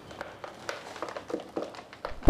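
Faint plastic-bag rustling and scattered light ticks as cocopeat is shaken out of the bag into a plastic planter box.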